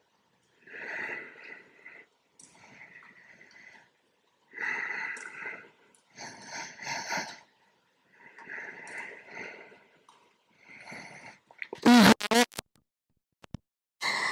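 A woman breathing slowly and audibly in a yoga posture, with about six long breaths, each a soft rush of air lasting a second or more. Near the end comes a short voiced hum with a falling pitch, louder than the breaths.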